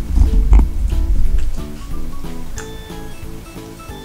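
Background music of short repeating notes. Over it, for about the first second and a half, loud close-up eating noises as rice and egg are shoveled from a bowl into the mouth with chopsticks.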